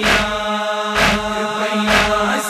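Male noha reciter chanting a long, held note of a mourning lament. Under the voice come sharp, evenly spaced strikes about once a second, three in all, in the rhythm of matam chest-beating.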